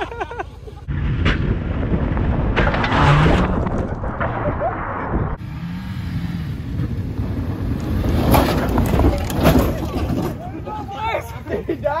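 Mazda car engine running rough and revving in two loud, noisy spells with a few low rising and falling pitches, then dropping away near the end as the engine dies.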